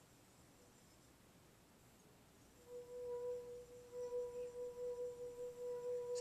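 A lead-free crystal wine glass, part-filled with red wine, singing as a fingertip is rubbed round its rim. About two and a half seconds in, a clear steady tone starts and holds, pulsing slightly.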